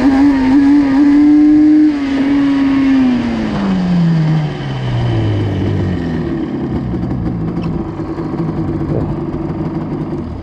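Yamaha Banshee's 350 cc twin-cylinder two-stroke engine held at high revs for about two and a half seconds. The revs then fall away over the next few seconds as the throttle is closed, and the engine settles into a lower, steady run near the end.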